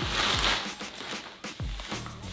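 Plastic courier mailer bag rustling and crinkling as a wrapped package is pulled out of it, loudest in the first half-second, over quiet background music.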